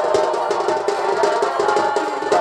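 Live Purulia Chhau dance music: a reed pipe such as the shehnai plays a wavering melody over fast, dense drum strokes.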